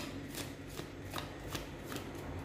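A deck of tarot cards being shuffled by hand, the cards slipping from one hand to the other with a series of short, sharp clicks, about two or three a second.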